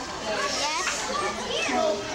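Children's voices chattering and calling out, several overlapping, with other voices around them.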